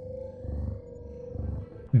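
A low rumble with a single steady tone held above it, swelling about half a second in and again near the end.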